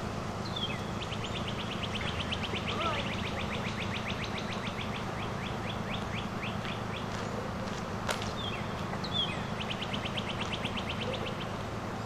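A songbird singing a long, rapid trill of about ten notes a second that slows and breaks up toward its end, then a second, shorter trill later on. A single sharp click comes about eight seconds in, over a steady low hum.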